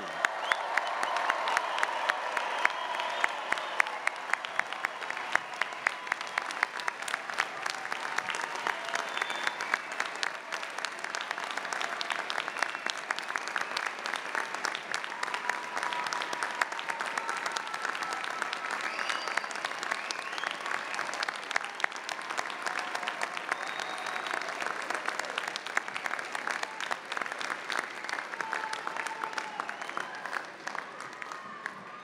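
Large audience applauding steadily, a dense continuous clapping with scattered cheers and calls over it, easing slightly near the end.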